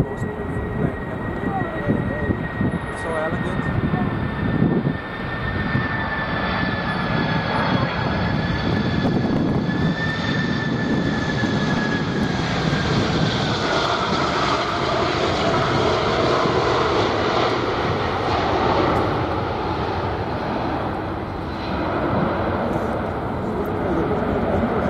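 Boeing 747-400 on landing approach, its turbofan engines giving a steady high whine over a rushing jet noise. The whine falls in pitch about thirteen seconds in as the aircraft passes, and the rush grows fuller after that.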